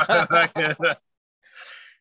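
A man laughing in a quick run of 'ha' sounds for about a second, then a pause and a short breathy exhale near the end.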